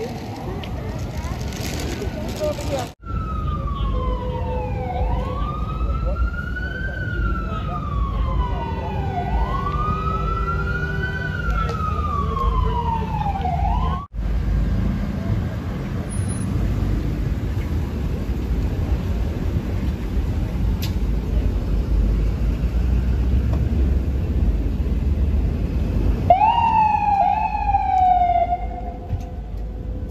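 Emergency-vehicle sirens over steady city traffic rumble. One siren wails, slowly rising and falling about every four seconds. Near the end, an FDNY ambulance siren starts up with a quick rise and then a falling tone as the ambulance pulls away.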